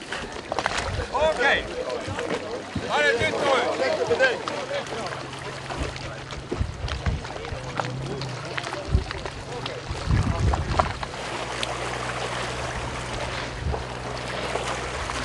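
Voices of people aboard an open wooden boat on the water for the first few seconds, then knocks and wind on the microphone over a low steady hum as the boat moves.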